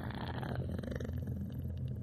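A steady, low rumbling hum with a purr-like texture.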